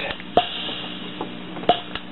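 Suzuki Keyman PK-49 preset keyboard sounding softly: a steady low held tone with a few short sharp taps, while its keyboard select button is pressed to switch voices.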